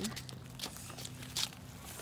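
A few footsteps in sandals on a paved path: three sharp steps, a little under a second apart, over a faint steady hum.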